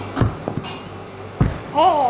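Dull thumps on a dough-covered work table as a round metal cutter is pressed down into rolled-out dough: three knocks in under two seconds, the middle one weaker, then a voice near the end.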